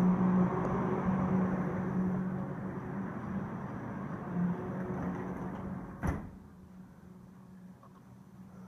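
Steady outdoor city noise with a low hum coming through an open balcony sliding door. About six seconds in, the door shuts with a single sharp knock, and the outside noise gives way to quiet room tone.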